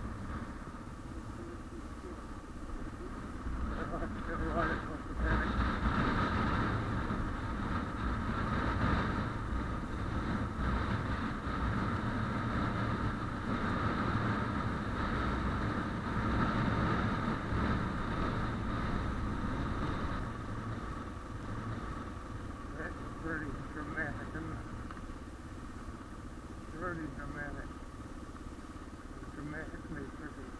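Suzuki DR650's single-cylinder engine running steadily as the motorcycle rides a gravel track, heard from a camera mounted on the bike, with wind and road noise. It is loudest in the first half and eases off later.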